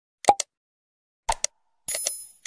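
Sound effects of an animated subscribe button: a short pop that drops quickly in pitch, two sharp clicks about a second later, then a bright bell ding starting near the end.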